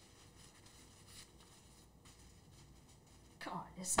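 Near silence, with a couple of faint rustles of paper being handled; a woman starts speaking near the end.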